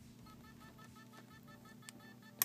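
Samsung 2.5-inch laptop hard drive powered on but not spinning up, giving a faint, rapid, even train of beeps, about seven a second. This is the beeping of a drive whose spindle motor cannot turn the platters; after the drop the heads are taken to be stuck on the platters, holding them, with a bearing or spindle fault less likely.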